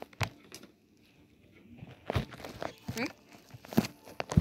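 Handling noise: a couple of short knocks, then soft rustling of fabric as a handheld camera is moved over bedding, with a voice speaking briefly near the end.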